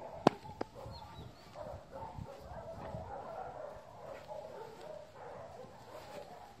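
Two sharp clicks just after the start, then a steady murmur of distant animal calls with dog barking among them.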